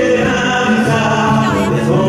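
Live song: a man singing long held notes with a choir-like vocal sound, accompanied by a guitar that he plays with his feet.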